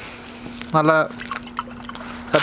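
Mostly speech: one brief spoken word from a man, over a faint steady hum and low background noise.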